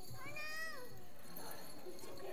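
A young child's high-pitched voice: one drawn-out call just under a second long that rises slightly and then falls away.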